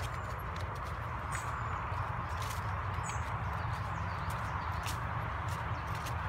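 Footsteps on fallen leaves along a woodland path, about two steps a second, over a steady low rumble and hiss.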